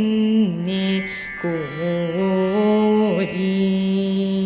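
A young woman singing a Carnatic vocal line, holding long notes and sliding between them with wavering ornaments, with a short break about a second in.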